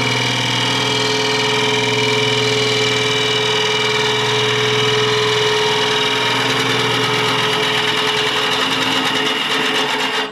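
Wood lathe running with a steady motor hum and whine while a hand-held turning tool cuts into the spinning wooden bowl, a continuous shaving and scraping sound.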